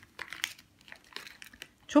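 A small paper candy sachet crinkling in a child's hands, with a few faint, short crackles as a lollipop is dipped into the popping candy inside.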